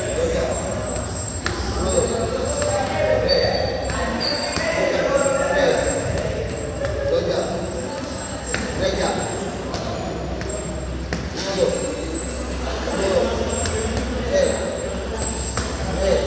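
Boxing gloves striking focus mitts in punches that land at irregular intervals, some singly and some in quick pairs.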